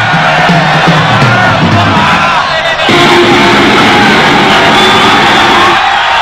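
Live festival crowd cheering and yelling, then about three seconds in the band starts up loud: a thrash metal band's distorted electric guitars, bass and drums.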